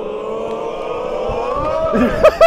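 A man's long drawn-out yell on one slowly rising note. A few low thuds of running footsteps come near the end as he takes off for a jump.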